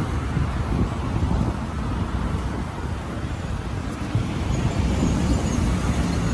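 Steady low rumbling noise with no clear pitch. Faint high chirps come in near the end.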